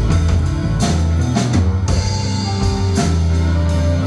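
A live rock band playing an instrumental passage: drum kit with repeated cymbal hits over sustained bass notes, with electric guitars and keyboard.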